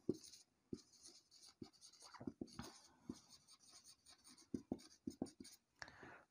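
Faint strokes of a marker pen writing on a whiteboard, coming in short runs with a cluster about two seconds in and another near the end.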